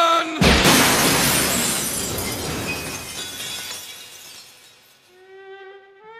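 A man's cry breaks off as a large glass window shatters with a sudden crash, the breaking glass fading away over about four seconds. A sustained violin note comes in near the end.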